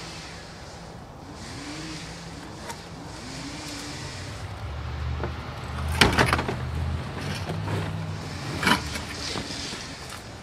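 An engine running steadily in the background, its low hum swelling for a few seconds in the middle, from yard-work equipment being run. Sharp clicks about six seconds in and again near nine seconds.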